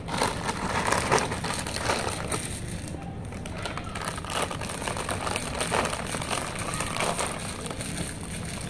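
Potato chips being chewed: irregular, crisp crunching and crackling.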